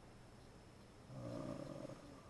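A man's brief, quiet, low hum, about a second in and lasting under a second.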